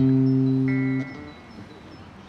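Amplified acoustic guitar: a single low note is struck, rings steadily for about a second and is then damped short.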